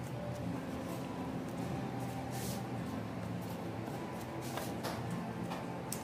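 Faint rubbing and rustling of hands pressing and smoothing glued quilted faux leather (corino) against the sides of an MDF box, with a few brief scrapes about halfway through and near the end. A steady low hum lies under it.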